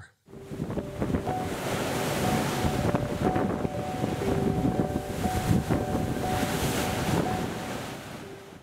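Rough sea surging and churning, with wind rushing over it and a few faint held tones drifting in and out. It fades out near the end.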